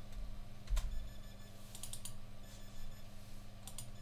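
Computer keyboard keys tapped a few times, short scattered clicks over a steady low hum.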